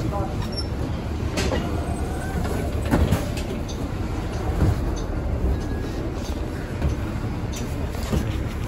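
Nova Bus LFS city bus, heard from inside at the front door: a steady low engine rumble, with a few knocks and clicks along the way.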